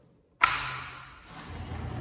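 A sharp clack about half a second in as a metal-framed sliding glass balcony door is worked by hand, dying away into a steady rush of noise.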